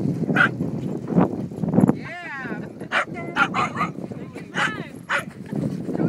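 Small dogs barking and yipping in rough play, a string of short sharp barks with a wavering whine about two seconds in.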